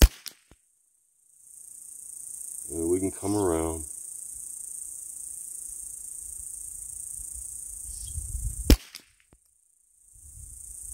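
Two .22 rimfire rifle shots, one right at the start and one near the end. Between them, insects buzz steadily in a high, even tone.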